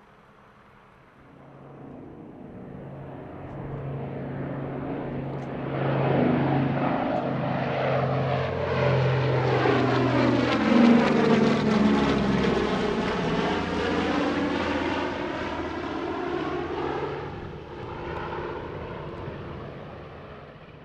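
Consolidated B-24 Liberator's four radial engines in a low flyby: the drone builds over several seconds, is loudest as the bomber passes, drops in pitch, and fades as it flies away.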